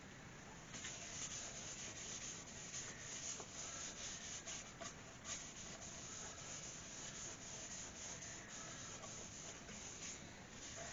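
Cloth rubbing sanding sealer onto an ash bowl on the lathe: a faint rustling hiss with small scratchy flicks, starting about a second in.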